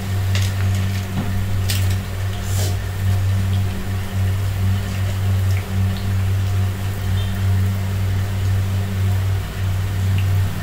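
Oil sizzling and bubbling in a kadai as pinches of ragi-and-greens pakoda batter fry, with a few sharp crackles in the first three seconds, over a steady low hum.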